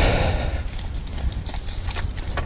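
KTM four-stroke dirt bike engine idling with a lumpy, uneven low beat, with a short hiss in the first half second and a few faint clicks over it.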